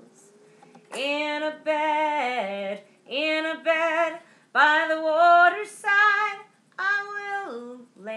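A woman singing a cappella, with no accompaniment, in phrases of held notes with a slight vibrato, beginning about a second in.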